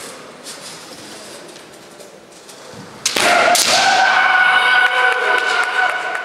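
Kendo exchange: about three seconds in, two sharp cracks of bamboo shinai strikes and a foot stamp. They come with a loud, long, drawn-out kiai shout that is held to the end. Before that there is only faint shuffling and tapping on the wooden floor.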